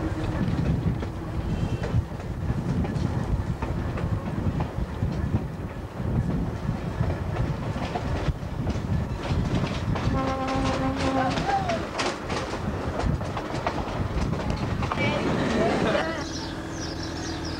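Electric interurban railcar running along the line: a steady rumble with a run of sharp clacks from the wheels over rail joints in the second half. A train horn sounds once, for a second and a half, about ten seconds in.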